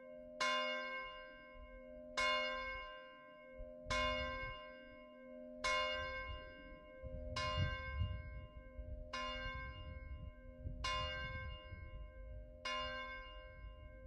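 A single bell tolled eight times, about one stroke every second and three-quarters, on the same note each time; each stroke rings on and fades before the next. A low rumble sits underneath from about four seconds in.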